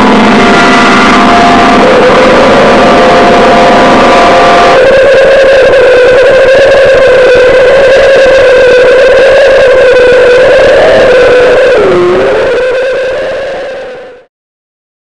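A live noise band playing loud, distorted music: a dense wash of noise under a held, droning tone that dips in pitch near the end. The sound then fades out over the last few seconds and stops.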